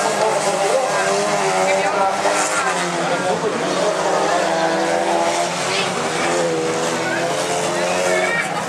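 Several standard-class race cars running on a dirt track, their engines revving up and down in overlapping rising and falling notes.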